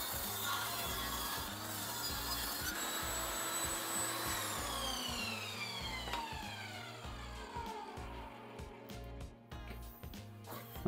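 Table saw with its blade tilted to 45 degrees ripping a board lengthwise. About four seconds in the motor is switched off, and the blade's whine falls steadily in pitch as it spins down.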